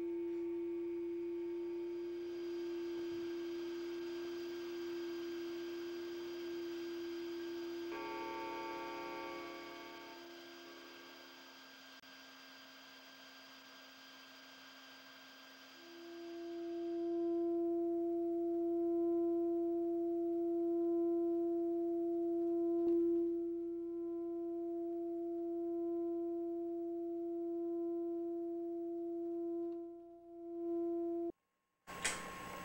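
Sustained electronic sine-like drone: a steady tone with a faint hiss layer over it, and a short cluster of higher tones about eight seconds in. The drone drops away and it goes quiet for a few seconds, then the tone swells back louder about halfway through and holds steady, with a single click near the end.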